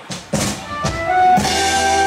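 Live dangdut koplo band starting a song: a few quick drum hits, then the full band comes in with held melody notes about a second in.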